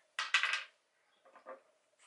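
A die being rolled: a quick clatter of clicks for about half a second as it tumbles, then a few fainter clicks as it settles.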